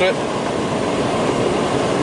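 Steady road and engine noise inside a semi-truck cab at highway speed: tyres rumbling on the pavement under the diesel's drone.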